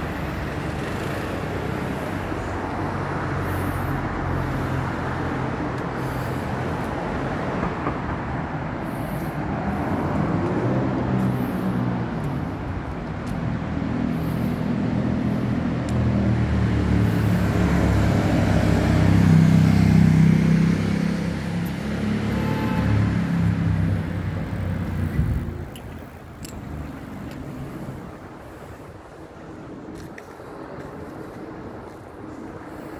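Road traffic passing close by, with the low running of a heavy vehicle's engine building to its loudest about two-thirds of the way through. The traffic noise drops away suddenly near the end.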